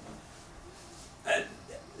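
Low room quiet broken once, about a second in, by a man's short hesitant "uh".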